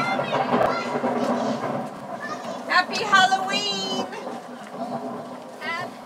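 Indistinct chatter of children's voices, with a brief higher-pitched voice about three seconds in.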